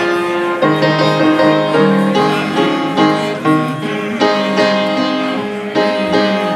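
Piano music: chords and a melody played at a steady, unhurried pace, the notes changing about twice a second.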